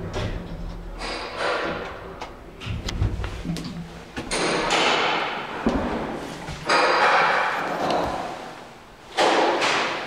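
Lift doors being opened and shut, with several thuds and a slam and stretches of door-sliding noise, some starting suddenly.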